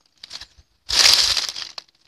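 A single short crunch, under a second long, about a second in, like a footstep on dry, gravelly ground strewn with leaves, with a few faint scuffs just before it.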